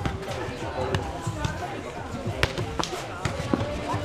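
A nohejbal ball being struck and bouncing on a sandy court during a rally: about four sharp thuds, spaced irregularly, over the voices of players and onlookers.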